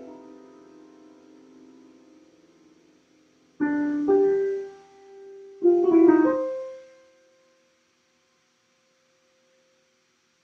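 Solo piano in a slow, sparse passage: a held chord dies away, then chords are struck about three and a half and six seconds in, each left to ring and fade. The last note fades out about seven and a half seconds in, leaving a pause.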